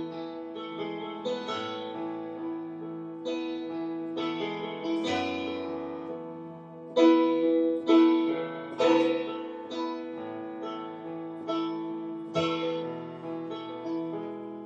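Electronic keyboard played with a piano-like tone: a slow intro of held chords over a steady low note, with new notes and chords struck every second or so. The strongest chords come about seven to nine seconds in.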